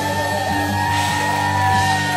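Live rock band with electric guitars, bass and drums holding one long sustained chord with a few drum hits, while the singer holds a long note into the microphone.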